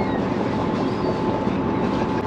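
Lobster boat's engine and hydraulic trap hauler running steadily as a trap is hauled up off the bottom, a steady mechanical drone with a thin high whine held through it.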